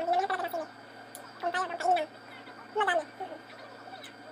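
Muffled, wordless vocal sounds from a woman with her mouth full while eating, in three short wavering bursts.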